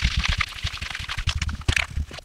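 Tarot cards being swirled and mixed face down on a cloth-covered table: a dense, fast rustle and clicking of card faces and edges sliding over one another, with a few sharper clicks near the end as the cards are pushed together into a pile.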